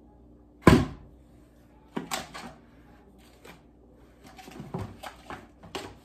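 A plastic food-grade bucket set down hard on a counter with one loud thump, then a few smaller knocks and light rustling of things being handled.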